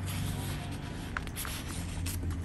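Paper rustling and sliding as a tracing-paper memo and a sticker are pushed into a paper pocket of a handmade junk journal, with a few small sharp ticks a little past the middle. A steady low hum sits underneath.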